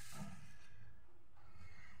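Quiet room noise with a faint low hum, and a soft breath-like hiss right at the start.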